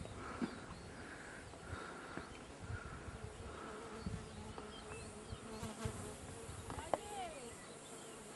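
Faint insect sounds from the hillside: a soft chirping pulse repeating about one and a half times a second, over a faint steady buzz.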